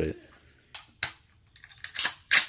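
A few short, sharp clicks in a quiet stretch, the clearest about a second in.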